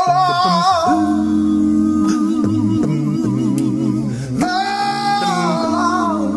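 Male a cappella gospel group singing in close harmony: a lead voice holds high notes with vibrato at the start and again from about four and a half seconds in, over lower voices sustaining chords and a bass line moving beneath.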